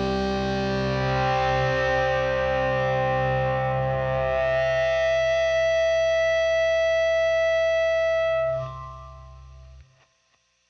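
A rock band's final chord ringing out on distorted electric guitars over bass, held steady for about eight and a half seconds. It then drops away sharply, and a faint tail cuts off just before the end.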